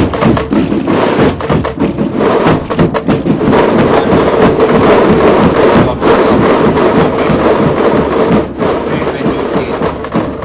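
Massed military pipe-and-drum band playing a march: a steady held pipe tone over continuous drumming.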